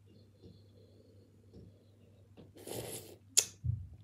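Soft mouth sounds of sucking an ice lolly, then about three seconds in a short breathy slurp and a single sharp smack as the lolly is pulled from the lips.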